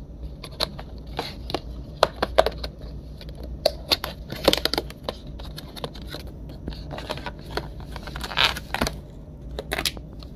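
Breakfast food packaging being handled: irregular crinkles, clicks and scrapes, busiest around the middle and again near the end.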